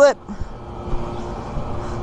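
Soft, irregular thumps of a small child bouncing on a trampoline mat, over a steady background noise.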